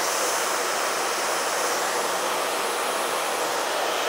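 Handheld hair dryer with a diffuser attachment running steadily on a set of pin curls: an even rush of air.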